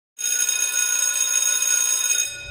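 A bell ringing steadily at an even level, a bright ring of several high pitches that starts just after the beginning.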